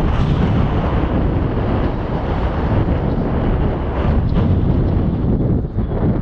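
Wind buffeting the microphone of a camera carried aloft on a parasail: a loud, unbroken rumbling rush of air, heaviest in the low end.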